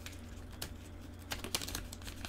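Typing on a computer keyboard: a run of light, irregular key clicks, busiest in the second half, over a steady low hum.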